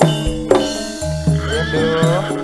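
Live Javanese campursari band music in the Sragenan koplo style: sharp drum strokes and sustained bass notes. A high, wavering line glides and rises over them in the second half.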